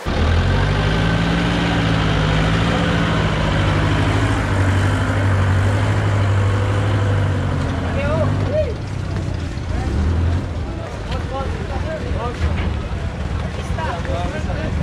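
Forklift engine running close by, its pitch rising and falling a little over the first few seconds, loudest for about the first eight seconds and then lower under people's voices.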